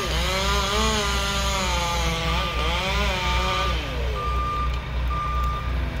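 Chainsaw cutting through a section high in a tree, its engine note dipping and rising several times under load for about four seconds before easing off. A truck's reversing beeper sounds in even beeps behind it, clearest from about four seconds in.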